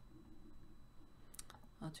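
A couple of sharp computer mouse clicks about one and a half seconds in, over a faint room hum.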